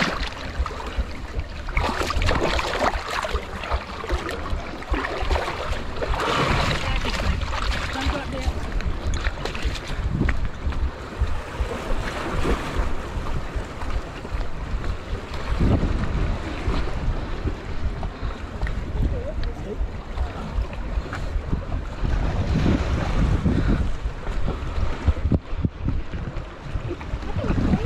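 Wind buffeting an action camera's microphone, over seawater splashing and lapping around swimmers and rocks, with many short splashes.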